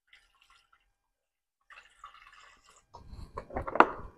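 Apple cider poured into a stainless steel braising pan around halved red cabbage: a faint trickle at first, then louder, irregular splashing in the last second or so.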